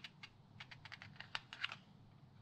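Glossy pages of a vintage British Vogue magazine handled and turned by hand: a quick run of about a dozen light paper crackles and ticks, the sharpest two near the end.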